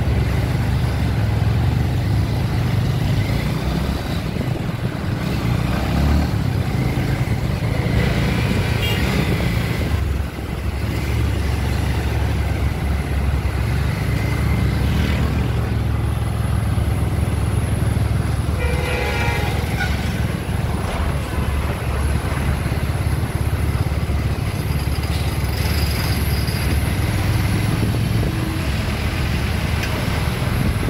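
Steady low engine rumble and road and wind noise from a vehicle moving through traffic, with a vehicle horn sounding for about a second and a half about two-thirds of the way in.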